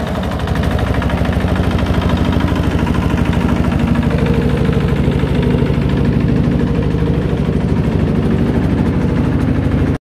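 Small single-cylinder diesel engine of the kind called a shallow machine, running steadily with an even, fast chug. It is driving a spinning wire-loop paddy thresher drum.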